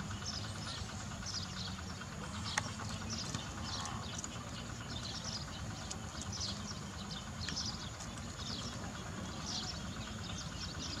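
Short, high chirping calls repeating about once or twice a second throughout, over a steady low outdoor rumble.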